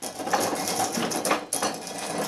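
A folding table being shoved and scraped along, with the glass beer bottles and tasting cups on it rattling and clinking.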